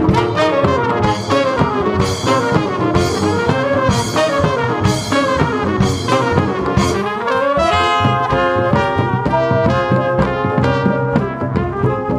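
A band playing, with brass horns carrying the melody over a steady rhythm; about halfway through the melody dips and rises, then breaks into a run of short, quick notes.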